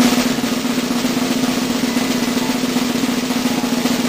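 A snare drum roll: rapid, even strokes held at a steady loudness, the suspense roll that signals a coming reveal.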